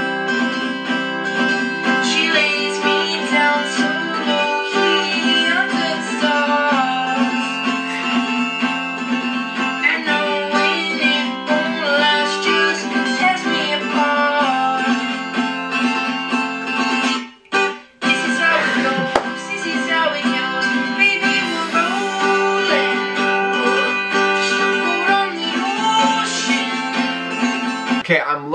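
Acoustic guitar strummed hard with a capo on the fifth fret, the strumming loud and piercing, with a young male voice singing along. There is a brief break in the music about two-thirds of the way through.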